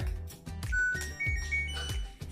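LG dryer's control panel playing its power-on tune as the power button is pressed: a few short electronic notes climbing in pitch. Background music with a steady beat runs underneath.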